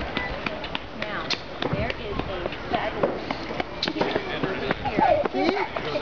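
Indistinct chatter of several people talking in the background, with a few short clicks.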